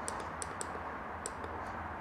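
Several light clicks, a few tenths of a second apart, from the push buttons on a Viper Mini pretreatment machine's speed-controller keypad as they are pressed to step from one user setting to another, over a faint steady low hum.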